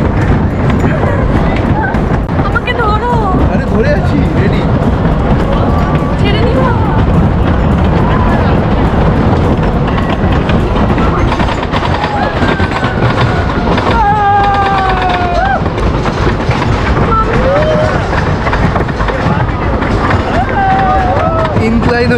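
Roller coaster train clattering up the chain lift hill: a steady mechanical rumble with rapid clicking from the track. Riders' voices call out over it about halfway through.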